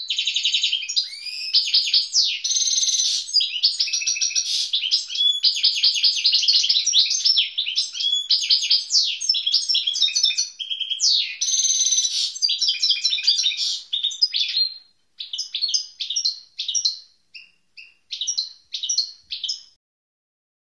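European goldfinch singing a fast, continuous twittering song of rapid trills and buzzy notes, the song of a young bird coming into breeding condition. About three-quarters of the way through it breaks into shorter phrases with pauses, then stops just before the end.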